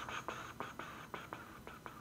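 A woman's long, breathy exhale through pursed lips, a frustrated sigh, with soft clicking from the mouth through it.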